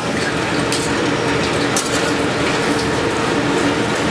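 Metal tongs and a slotted spatula clinking and scraping in the wire basket of a commercial deep fryer, over a steady hiss and hum.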